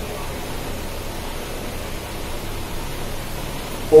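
Steady, even hiss of background noise with no speech.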